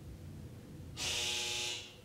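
A short buzzing tone, steady in pitch, starting suddenly about a second in and lasting under a second before fading, loudest sound in an otherwise quiet room.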